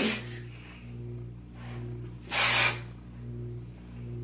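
A hair texture spray (OGX Bodifying Bamboo Fiber Full Tousle Spray, a non-dry texture spray) spritzed onto the hair in one short hissing burst a little past halfway.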